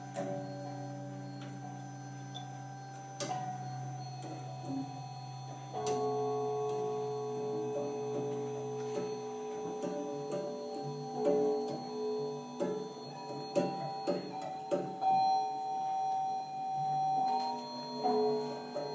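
Free-improvised music from a quartet of cello, saxophone, synthesizer and percussion. Held tones and a low drone that fades out about halfway through are broken by sharp struck hits that ring on, first singly and then in a cluster in the second half.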